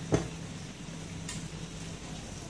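Wheat-flour appam balls deep-frying in oil in a steel pan, a steady sizzle, as a slotted steel spoon stirs and turns them. There is one sharp clink of the spoon against the pan just after the start and a fainter one about a second later.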